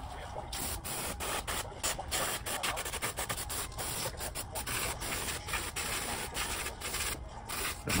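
Aerosol electrical cleaner hissing out of the can in many short bursts with brief gaps between them, sprayed onto a DC motor's armature to clean it. The spray starts about half a second in and pauses briefly near the end.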